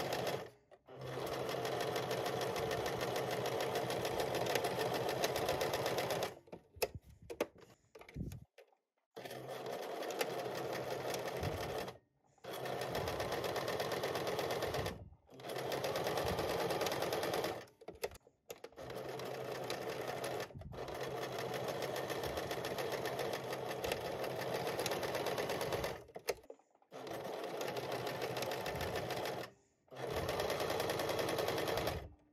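Electric household sewing machine stitching a seam, running in stretches of a few seconds with brief stops between them. About six seconds in it halts for a couple of seconds, with a few short clicks, before running again.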